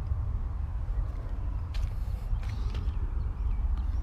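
Steady low rumble of wind on the microphone, with a few faint clicks in the middle.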